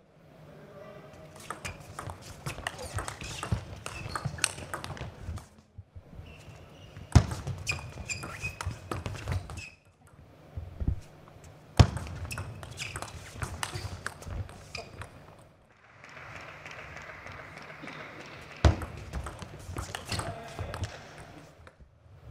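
Table tennis ball clicking off rackets and table in several quick doubles rallies, with a few louder hits. Voices and a stretch of clapping come between points.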